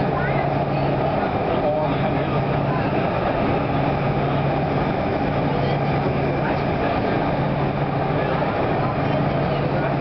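Canada Line SkyTrain car running through the tunnel, heard from inside the passenger car: a steady rolling rumble with a low hum that drops out briefly a few times.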